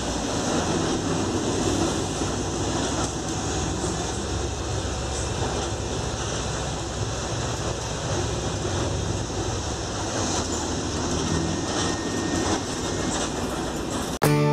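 City bus running along a street, heard from inside the passenger cabin: a steady engine and road rumble that holds level throughout.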